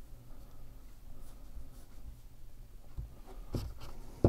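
Quiet room tone with a faint steady hum, soft scratchy handling noise and a few short clicks from about three seconds in.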